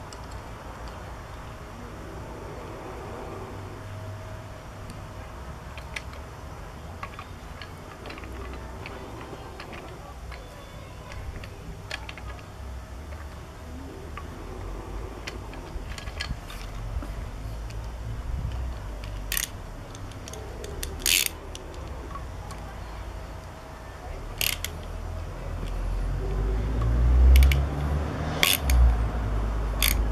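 Hand tools on metal while a puller is fitted to a Villiers engine's Dynastart and its bolts are turned: scattered small clicks and clinks, with sharper clicks in the second half. A low rumble builds near the end.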